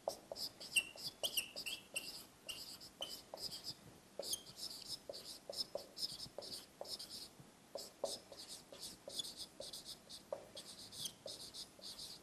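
Dry-erase marker squeaking across a whiteboard as three words are written in short, irregular strokes, with brief pauses between the words.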